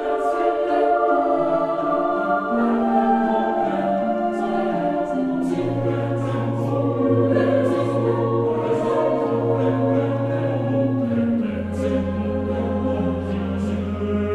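Intro theme music: choral singing in slow, sustained chords, with a low held bass line coming in about five and a half seconds in.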